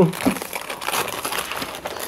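Gift-wrapping paper rustling and crinkling irregularly as a present is unwrapped, after a brief spoken word at the very start.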